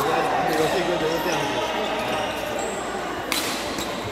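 Badminton rackets striking a shuttlecock during a doubles rally, a series of sharp hits with the loudest about three seconds in, over voices and chatter echoing in a large sports hall.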